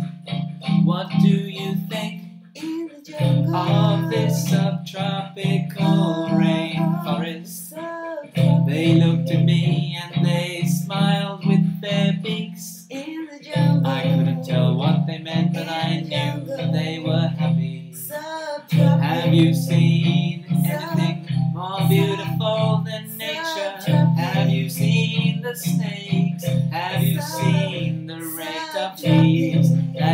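A man and a woman singing a song together over an instrumental backing whose low bass chords repeat in phrases of about five seconds, each ending in a brief break.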